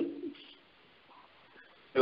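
A man's voice holds the end of a drawn-out word and fades away within about half a second. A pause of faint room tone follows.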